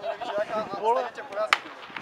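People talking close by, with a single sharp click about one and a half seconds in.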